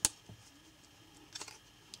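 Emerson CQC-8 folding knife being worked open by hand: a sharp metallic click at the start, a fainter one just after, then a few soft clicks about a second and a half in as the blade begins to swing out.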